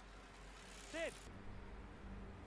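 Faint room tone with a low steady hum, broken about a second in by one short voiced "hm" whose pitch rises and falls.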